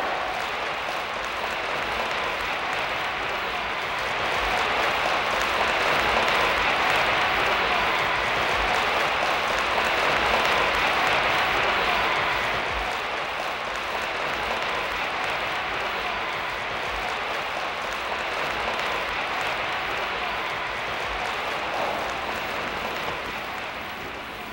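A large crowd applauding and cheering in a steady wash of noise, swelling for several seconds and easing off toward the end.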